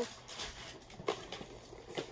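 Faint handling noise from a cardboard shoebox being pulled out of a plastic shopping bag: a few light rustles and taps with quiet gaps between them.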